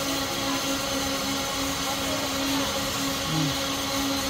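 Steady mechanical whirring with a constant low hum, with a brief faint voice sound a little over three seconds in.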